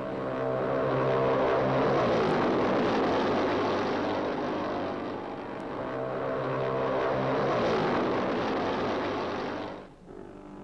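Racing motorcycle engine running hard at high revs. It swells as the bike approaches, eases briefly about five seconds in, then rises again before cutting off suddenly near the end.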